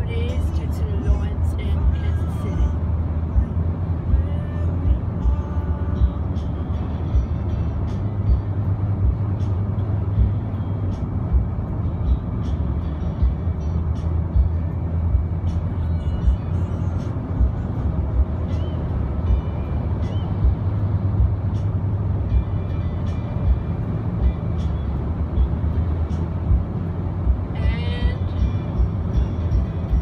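Steady low road and engine rumble inside the cabin of a Jeep Compass at highway speed, with small frequent knocks from the road surface. Faint music and a voice run underneath.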